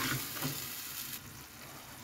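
Thick chilli-tomato paste frying in coconut oil in a clay pot, with a ladle stirring at first. The sizzle fades, and its hiss drops away a little after a second in.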